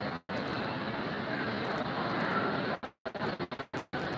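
Steady, noisy background din of a crowded shrine hall with no clear tone in it, likely worshippers murmuring in a large echoing space. The sound cuts out abruptly to silence just after the start and again about three seconds in, typical of a phone livestream's audio dropping out.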